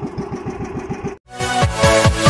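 Outrigger fishing boat's engine running with a steady, rapid putter, cut off suddenly about a second in. After a short gap, electronic music with falling bass notes starts loudly.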